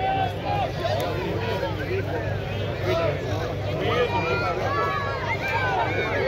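Crowd of spectators talking and calling out, many voices overlapping at once.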